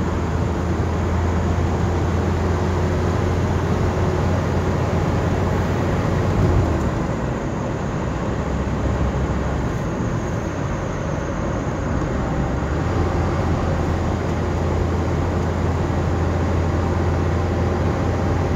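Cabin noise inside a moving Toyota Noah minivan: a steady low engine drone over road and tyre noise. The low drone drops for a few seconds about seven seconds in and picks up again about thirteen seconds in.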